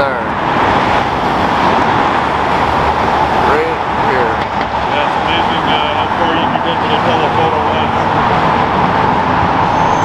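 Steady city-street traffic noise as a line of cars, among them a lime-green BMW M4 coupe, pulls away and drives past. There are faint voices about four seconds in.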